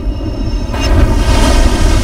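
Loud, deep rumble with a rushing hiss that swells about two-thirds of a second in, with a faint steady drone above it: film-trailer sound design.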